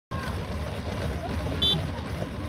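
Outdoor background of a steady low rumble with people's voices in it, and a short high-pitched tone about one and a half seconds in.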